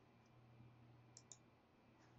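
Near silence with a faint computer mouse click, a quick press-and-release pair a little over a second in, over a low steady hum.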